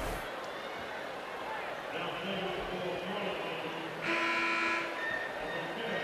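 Arena horn sounding once, a steady blast of just under a second about four seconds in, after a fainter steady tone about two seconds in, over crowd noise; at this point it signals a substitution for a player who has fouled out.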